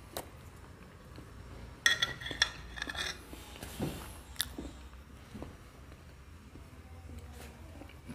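Quiet clinks and scrapes of a metal fork against a plate as a person eats, clustered about two to three seconds in, with a couple of single clicks later.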